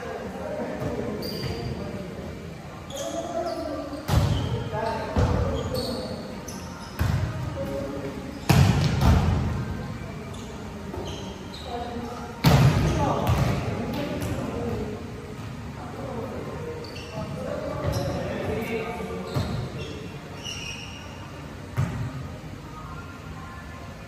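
Volleyball rally in an echoing gym: the ball is struck hard several times, the loudest hits about eight and a half and twelve and a half seconds in, each ringing on in the hall, while players call out to each other.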